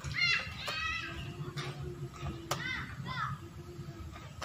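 Children's voices calling out in the background: high-pitched shouts near the start and again about two and a half seconds in.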